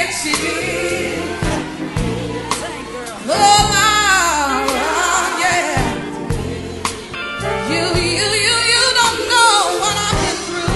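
Gospel music: voices singing over a band with bass and drum hits. A lead voice sweeps through long runs of notes around the middle and again near the end.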